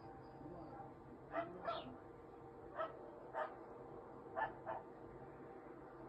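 A dog barking: six short barks, mostly in quick pairs.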